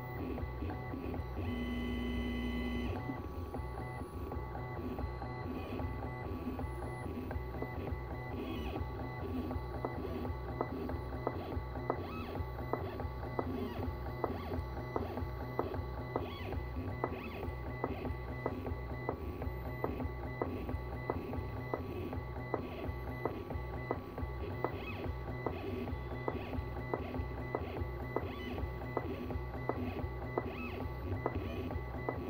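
CNC pen plotter's stepper motors driving a ballpoint pen over paper. There is a steady pitched whine for about a second and a half near the start, then a fast, uneven run of short stop-start whirs and ticks as the pen draws small strokes.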